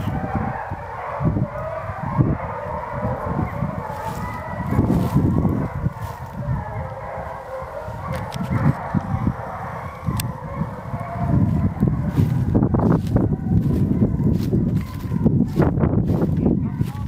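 A pack of Penn-Marydel foxhounds baying together, many voices overlapping without a break: hounds giving tongue on a fox's trail. Low rumbling on the microphone runs underneath.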